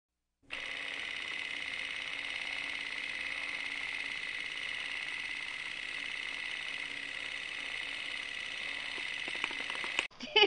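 Film projector sound effect: a steady whirr with a rapid mechanical clatter. It starts about half a second in after a brief silence, with a few clicks near the end.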